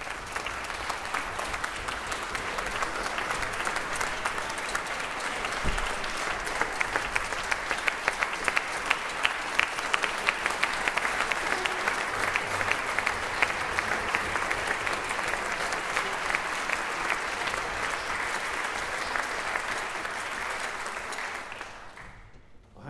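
Concert audience applauding in a hall, a dense steady clapping with sharper individual claps standing out in the middle.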